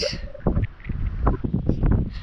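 Gusty wind buffeting the microphone, a low rumble that rises and falls, with a few short knocks scattered through it.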